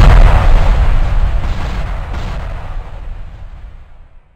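Explosion-like boom sound effect with a deep rumble, already sounding loudly and dying away steadily until it is almost gone by the end.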